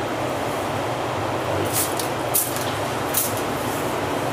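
Water splashing lightly three or four times as a koi is let go from the hands into a tub, over a steady background hiss.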